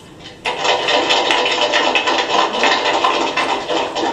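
An audience applauding. The clapping starts about half a second in and holds at a steady level.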